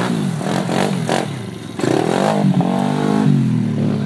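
110cc pit bike's single-cylinder four-stroke engine revving up and down while being ridden. It gets louder about halfway through, and the revs drop near the end.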